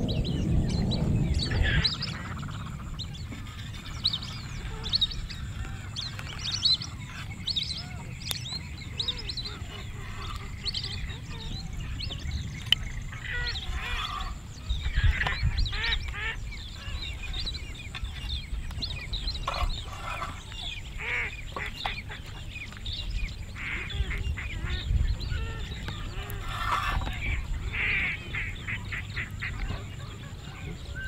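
Birds calling over and over, many short separate calls scattered through the whole stretch, over a steady low rumble that is louder in the first couple of seconds.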